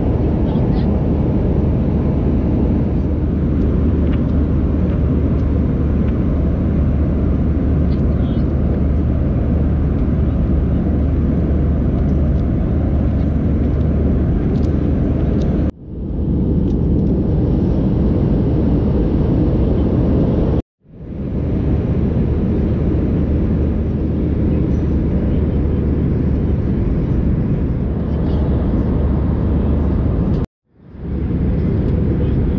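Steady cabin noise inside an Airbus A319 airliner: a loud, deep rumble with airflow hiss. It dips briefly just past halfway and cuts out for a moment a few seconds later, swelling back each time.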